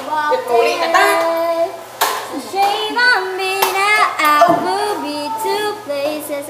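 Singing voice carrying a pop-song mashup melody without clear words, with a few sharp hand claps about two and three and a half seconds in.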